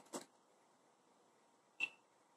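Two short, sharp snaps of rubber bands being wound tightly around a bundle of fabric for tie-dye, about a second and a half apart; the second is louder, with a brief ring.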